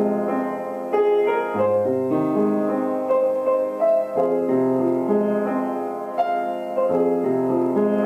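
Slow, gentle solo piano music, with sustained notes and chords and new notes struck every second or so.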